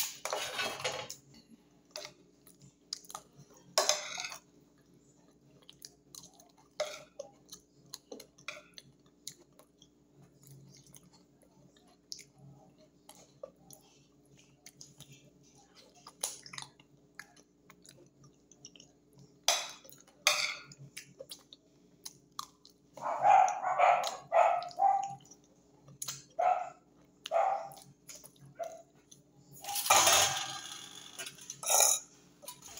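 A person eating close to the microphone: chewing and mouth noises, with a fork clicking and scraping on a glass plate. Several louder bursts come about three quarters of the way through.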